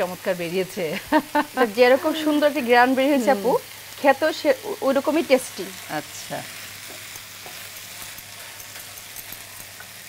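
Dried fish and tilapia bhuna sizzling in oil in a pan while a spatula stirs and scrapes it. Women's voices talk over it for the first six seconds or so, after which only the steady sizzle is left.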